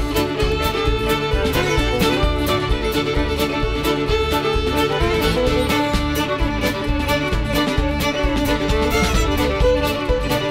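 Instrumental break in a country song: a fiddle carries the tune over a steady beat, with no singing.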